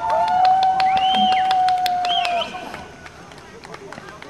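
Paintball markers firing in rapid, irregular pops. Over them, long drawn-out shouts are held for about two and a half seconds, then the shouting stops and the popping carries on more quietly.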